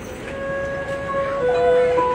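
A traditional Vietnamese instrumental ensemble begins playing: a slow melody of long held notes, with a second line joining about one and a half seconds in, growing louder.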